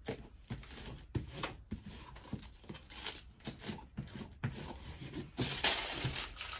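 Crinkling and rustling of a self-adhesive plastic label sleeve being peeled and pressed onto a cardboard box, with small taps and crackles throughout. A louder ripping rustle comes near the end, as the backing is pulled off and scrunched.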